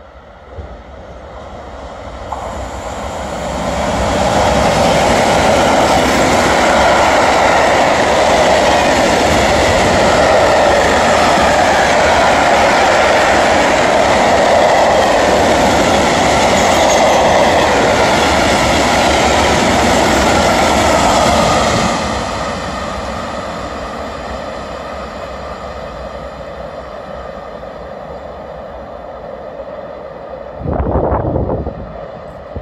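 Electric freight train passing through a station: the locomotive's approach builds up, then a long rake of hooded freight wagons runs past with loud, steady wheel-on-rail noise. The noise drops suddenly once the last wagon has passed, about 22 seconds in, and then fades away.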